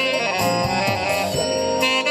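Live jazz band music: an alto saxophone playing with guitar accompaniment over a steady beat.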